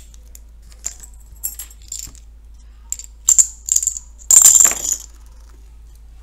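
Plastic counters dropped into and around a glass jar, clicking and clattering against the glass. A few light clicks come first, then a louder clatter about three seconds in, and the loudest clatter about four and a half seconds in.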